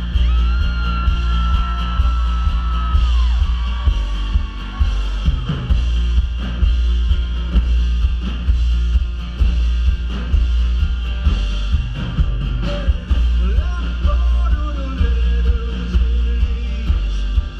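A live band playing loud amplified music through a PA system, with heavy bass and a steady beat.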